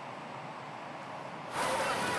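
A low, steady hiss, then about one and a half seconds in a louder, even rushing noise begins, with no distinct bangs: the ambient sound of fishing boats burning in a large fire.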